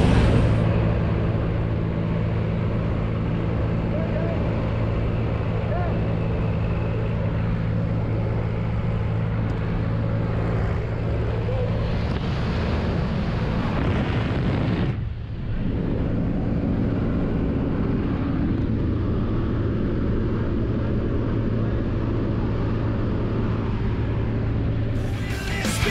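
A light aircraft's engine and propeller droning steadily, heard from inside the cabin with air rushing in through the open jump door. The drone dips briefly about fifteen seconds in.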